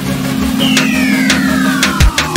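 Electronic hip-hop instrumental at a breakdown: the bass and drums drop away, leaving a held low synth note. About half a second in, a sweep effect starts sliding steadily down in pitch, with a few sharp hits about half a second apart.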